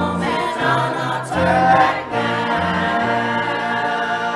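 Church choir of mixed adult and children's voices singing together, with a piano playing along underneath.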